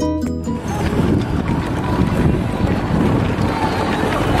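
Background music that stops about half a second in, followed by steady, gusting wind noise on the microphone, with a heavy low rumble.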